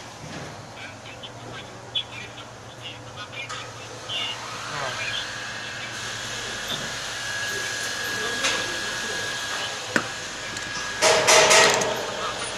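Workshop room noise with faint distant voices and a few sharp clicks. A steady high whine comes in about halfway through. Near the end comes a loud rustling burst as the phone that is recording is moved.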